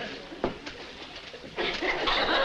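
Studio audience laughter falling away to a low murmur, with a single sharp click about half a second in, then swelling again near the end.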